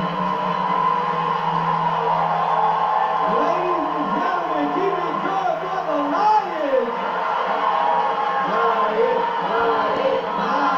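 Studio audience cheering and applauding over show music, heard through a television speaker. A run of rising-and-falling whoops comes through midway.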